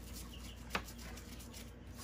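Faint scrubbing of a small brush over the aluminium fins of a window air conditioner's coil, with one sharp click about three-quarters of a second in.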